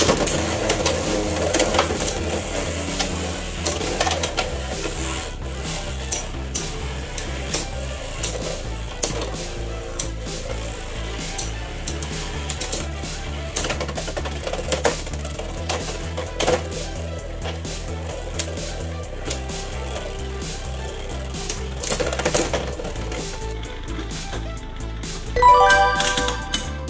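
Two Beyblade X metal spinning tops launched into a clear plastic stadium, whirring and clacking against each other and the stadium walls in many sharp collision clicks. Background music with a steady beat plays throughout, and a louder burst of sound comes near the end.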